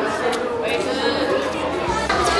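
Indistinct chatter of several people's voices, with no words clear enough to make out.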